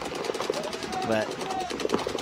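Rapid, evenly spaced popping of paintball markers firing continuously across the field, under commentary.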